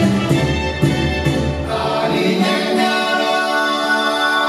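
Salsa music for a dance show: the band plays with bass and percussion, which drop out about halfway through, leaving a long held chord.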